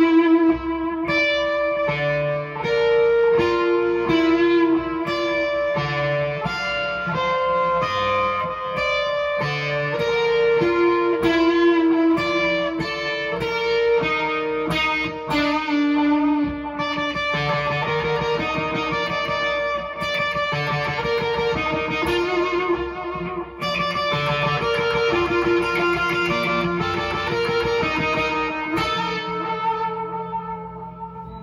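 ESP LTD electric guitar played through an Onkel Amplification Death's Head fuzz pedal, whose fuzz comes from Russian germanium transistors and a 12AU7 preamp tube: a melodic line of sustained, overlapping fuzzed notes, dying away near the end.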